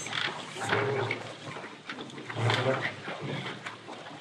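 Indistinct speech: a voice talking in short phrases, unclear on the old recording.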